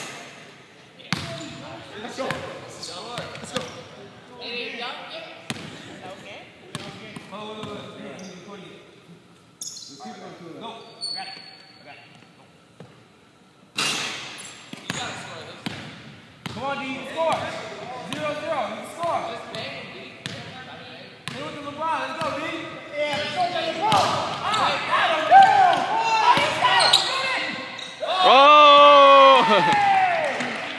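A basketball bouncing on a hard gym floor, with voices talking and calling out in a large echoing hall. Near the end comes a loud squeal that falls in pitch.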